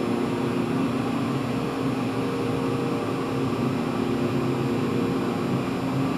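Steady mechanical hum with a few low held tones, heard inside a moving elevator car.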